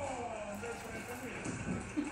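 Faint, indistinct voices over steady room noise, opening with one drawn-out spoken word that falls in pitch.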